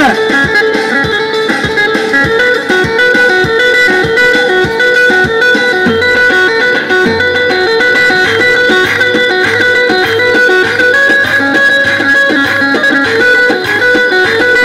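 Electronic keyboard playing a fast Turkish dance tune (oyun havası) with a stepping melody over a drum beat; a pulsing bass line comes in about six seconds in.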